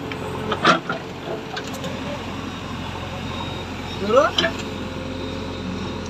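JCB 3DX backhoe loader's diesel engine running steadily under load as the backhoe digs out brush. There is a sharp crack about a second in, and a quick rising sound about four seconds in.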